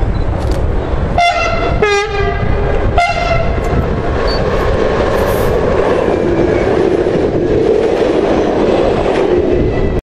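NS ICMm (Koploper) electric multiple unit sounding three short horn blasts as it approaches, the second lower in pitch. It then passes close by at speed with a loud steady rush of wheel and rail noise.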